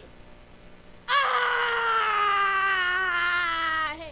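A boy's long, loud wail, starting about a second in and held for nearly three seconds, slowly falling in pitch with a waver near the end before it cuts off.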